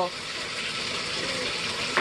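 Bathtub faucet running steadily, water pouring into the tub as it fills.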